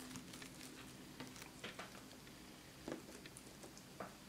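Faint handling noise: a few soft clicks and taps as fingers bend a rubbery liquid-latex strand studded with pumpkin seeds over a plastic tray, the clearest tap about three seconds in.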